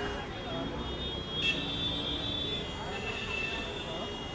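Indistinct voices on a busy street with traffic noise and a few thin, steady high tones in the background. There is a single sharp click about a second and a half in.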